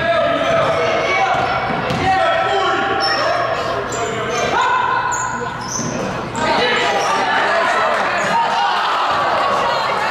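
A basketball dribbled and bouncing on a hardwood gym floor, with shoes squeaking and players' and spectators' voices echoing in the hall; the voices get louder just after six seconds in.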